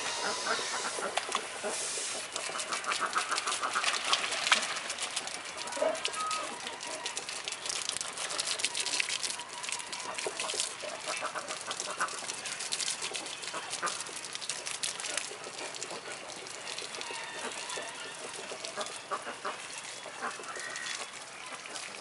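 Water spraying from a garden hose onto a brown bear's fur and the wet ground of its enclosure: a continuous hissing spray with spattering, heaviest in the first half. A few short runs of quick repeated animal calls come through in the background.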